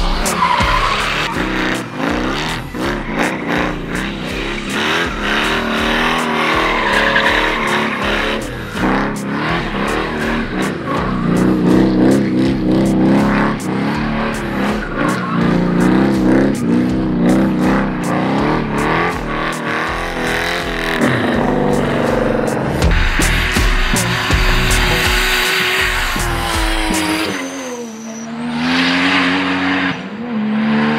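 Drift cars' engines revving hard, their pitch wavering as the throttle is worked, over loud tyre squeal. Music plays underneath. Near the end the engine note drops and then climbs again.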